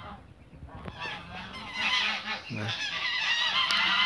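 Brown Chinese geese honking, the calls starting about two seconds in and building into a busy, overlapping chorus towards the end.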